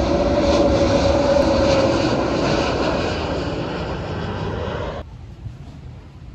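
Jet airliner passing low overhead: loud engine noise with a steady whine. It cuts off suddenly about five seconds in, leaving faint wind noise.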